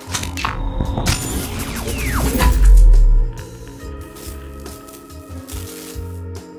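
Animated logo intro sting: sharp clinking hits and a building noise with a falling tone, peaking in a deep low boom about two and a half seconds in, then a quieter music bed.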